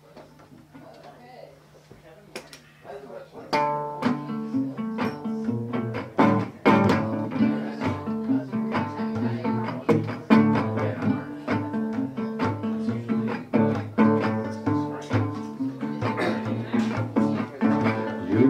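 Regal resonator guitar with an aluminum cone, tuned to open D, playing a song's instrumental intro. The guitar comes in about three and a half seconds in, after a few quiet seconds, with a steady run of plucked notes.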